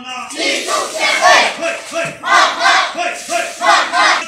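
A small crowd of protesters chanting slogans in unison, with short shouted syllables in a steady rhythm of about three a second.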